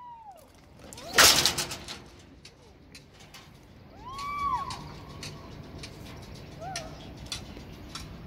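A woman screaming during a rope jump, heard from a distance: a few drawn-out high cries that rise and fall in pitch, one at the start, one about four seconds in and a shorter one near seven seconds. A short loud rush of noise about a second in.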